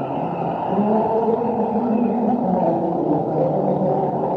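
Live concert music heavily muffled, as on an amateur recording made in the hall: a melody of held notes, each lasting about half a second to a second and stepping up and down in pitch, with no treble.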